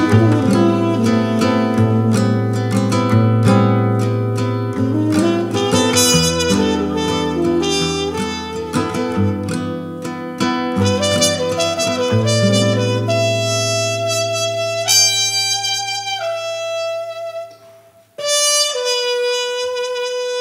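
Instrumental jazz: a muted trumpet plays a slow, held melody over strummed acoustic guitar chords. Near the end the music drops out for about half a second, then comes straight back in.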